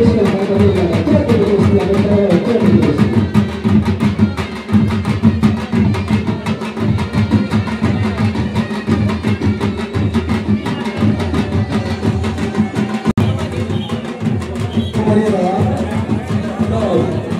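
Drums beaten in a fast, steady rhythm, with a melody line over them at the start and again near the end.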